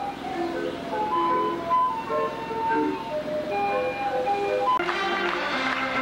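A circus organ playing a tune in clear, sustained, pipe-like notes. About five seconds in, it gives way to fuller live band music.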